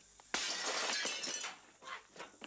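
Shop-window glass shattering: a sudden crash about a third of a second in, with breaking shards that fade out over about a second.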